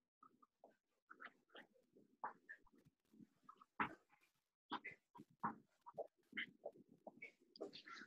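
Near silence broken by faint, scattered short noises, a few a second, coming through a video call's audio.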